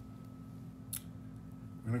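One brief, light click about a second in from handling the scissors and skirt material on the bench, over a steady low hum.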